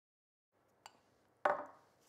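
A pastry brush knocking against a small glass of olive oil: a faint tick a little under a second in, then a louder glassy clink about half a second later that rings away briefly.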